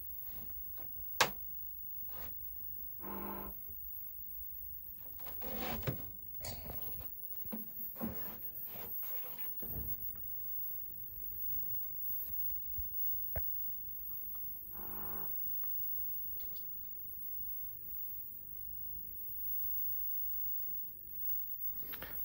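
Scattered clicks and knocks of handling as a repaired power supply board is fitted to a 1970s RBM A823 colour TV and the set is switched on, with a faint steady hum from about ten seconds in as the set powers up and its picture comes on. Two short pitched sounds come about three and fifteen seconds in.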